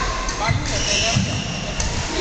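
Badminton singles rally on an indoor court: dull thumps of players' feet landing and a racket striking the shuttlecock, with people talking in the hall.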